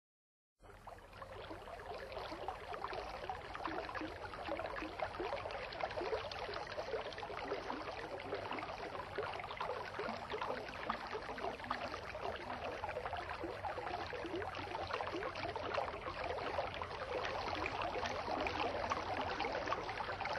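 Running, bubbling water like a brook or stream, starting about half a second in and going on evenly.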